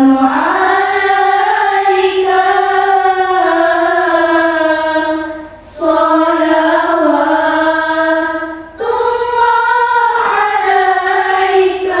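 A group of girls singing a sholawat (Islamic devotional song in praise of the Prophet) in unison without accompaniment. The long melodic phrases glide smoothly and break briefly for breath about 6 seconds and 9 seconds in.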